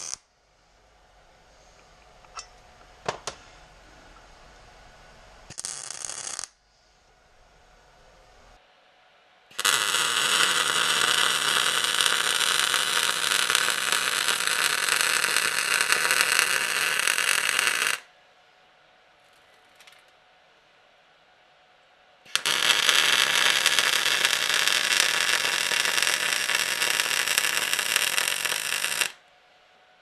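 MIG welder arc welding the steel snout of a torque converter: a short burst about six seconds in, then two long runs of steady crackling hiss, the first about eight seconds and the second about seven, with a pause between.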